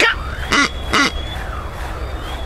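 A man's voice making two short, throaty bursts about half a second apart, like a stifled chuckle or throat clearing.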